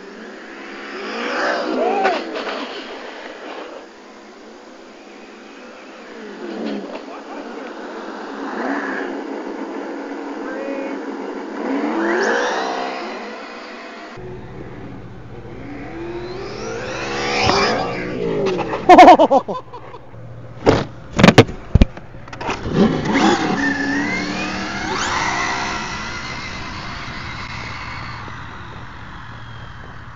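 Traxxas Slash 4x4 brushless RC trucks making high-speed passes, each with a pitch that rises and falls as the truck revs and goes by. A cluster of loud, sharp thumps comes about two-thirds of the way through.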